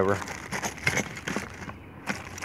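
Plastic packaging bags crinkling in scattered small crackles as a hand presses a wrapped cord reel and work light down into a cardboard box.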